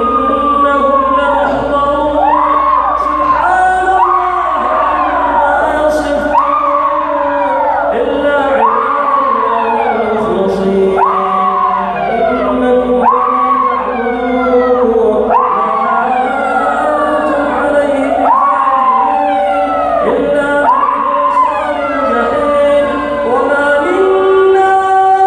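A male Quran reciter holding long chanted notes while worshippers behind him cry out over and over, high wails that each fall in pitch, roughly once a second. The uploader takes the cries for the screams of people possessed by jinn.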